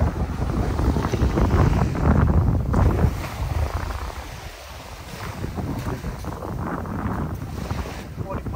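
Wind buffeting the microphone with a gusty low rumble, easing for a moment about halfway through, over small waves washing onto a sandy beach.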